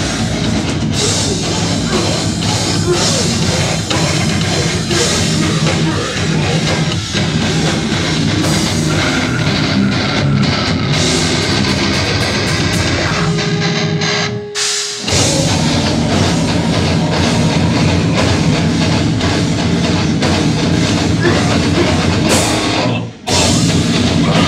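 Metal band playing live: distorted electric guitar, bass guitar and drum kit at full volume. About two-thirds of the way through the band breaks off briefly, leaving one held note ringing before they crash back in, and there is another short stop near the end.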